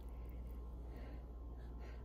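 Faint light scrapes and ticks of a metal fork in a bowl as noodles are spun onto it, over a steady low hum.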